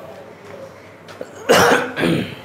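A man coughing: one loud burst about a second and a half in.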